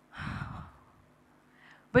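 A woman sighs once into a podium microphone: a single breathy exhalation of about half a second.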